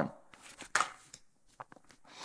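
Tarot deck being handled: one sharp card tap about three-quarters of a second in, then a few light clicks of the cards.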